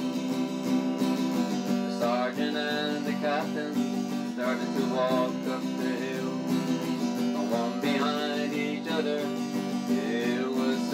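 Song with strummed acoustic guitar chords playing steadily, a wavering melody line running above them.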